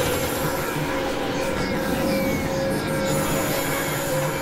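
Experimental industrial synthesizer drone: a dense, grinding noise with steady held tones underneath, with a screeching, train-like quality.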